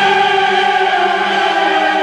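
Background choral music: voices holding one long, steady chord.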